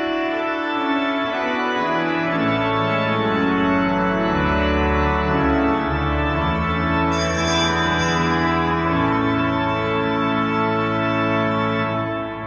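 Church organ playing slow sustained chords. Deep pedal bass notes come in about two seconds in and drop lower a couple of seconds later, and bright high notes sound briefly about seven seconds in.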